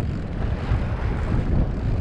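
Steady wind noise buffeting the microphone over the low rumble of a boat under way: the outboard motors running and water moving past the hull.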